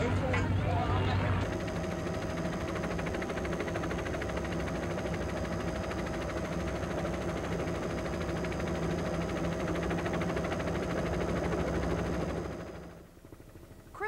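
Helicopter in flight: a steady engine and rotor noise with a few steady whining tones, fading out near the end. At the start, a second or so of voices over a low hum.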